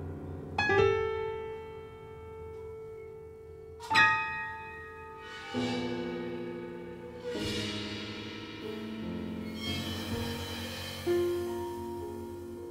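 Sparse, slow piano music: single struck notes and chords left to ring out, with two loud accented strikes about half a second in and at four seconds, then quieter, lower notes entering every second or two.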